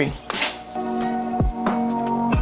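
Background music with a held chord and deep bass notes that slide down in pitch twice, starting about a second in after a brief rustle.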